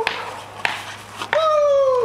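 Paintball markers firing: sharp single pops about half a second and just over a second in. The last pop is followed by a drawn-out whine that falls slowly in pitch.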